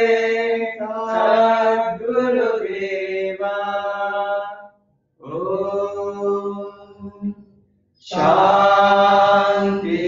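A voice chanting a Sanskrit mantra in long, nearly level held phrases, with short breaks for breath about halfway through and again near the end.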